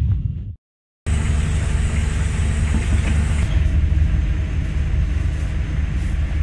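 Intro music fades and cuts off, and after a brief silence a research ship's engines and deck machinery run with a steady low hum.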